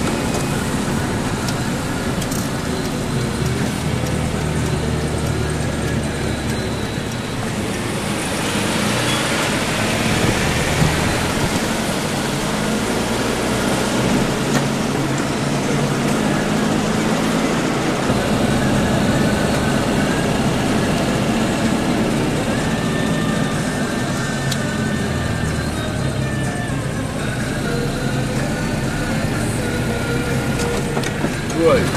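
Steady engine and road noise heard from inside the cabin of a moving Citroën DS.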